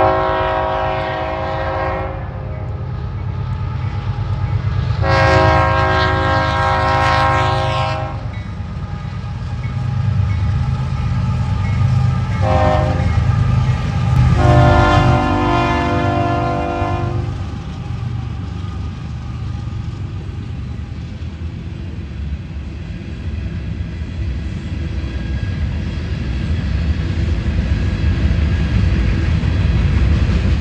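Union Pacific freight locomotives passing close by, their air horn sounding long, long, short, long, the grade-crossing signal. Under and after the horn, a continuous low rumble of the diesels and the freight cars rolling past.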